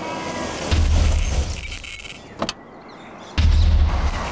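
Car driving up, its engine and tyres rumbling low with a thin, high, steady tone over them. The sound cuts off abruptly about two seconds in, a single click follows, and the rumble comes back a little before the end.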